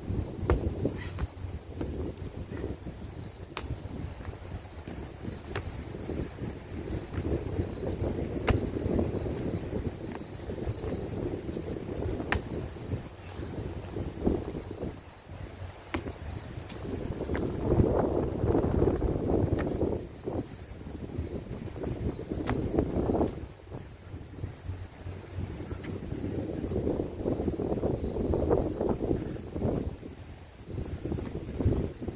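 Strong sea wind buffeting the microphone in gusts, swelling about two-thirds of the way through and again near the end.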